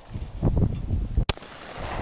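A single shotgun shot about a second and a quarter in, one sharp crack, fired at a clay skeet target just released on the shooter's call.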